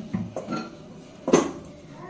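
Kitchen items being handled and knocked on a counter: a few light knocks and clinks, with one louder, sharper clatter a little over a second in.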